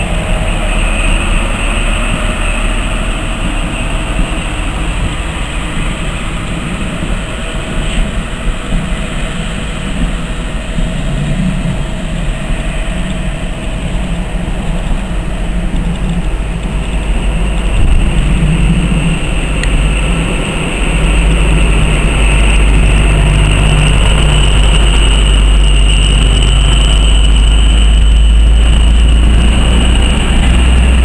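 Diesel passenger train running past at low speed, its low engine and wheel rumble growing louder in the second half as it draws close.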